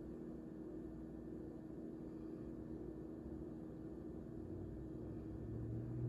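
Quiet room tone: a steady low hum, with a deeper hum swelling louder in the last second or two.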